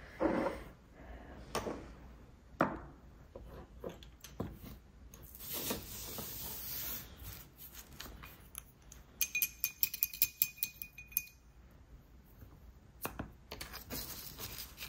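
Light taps and clinks of small nail-art tools, glass polish bottles and a silicone stamper being handled on a tabletop, with a brief soft hiss a few seconds in and a quick run of ringing clicks lasting about two seconds past the middle.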